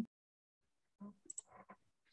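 Near silence, broken in the second half by a few faint short clicks and brief faint snatches of voice.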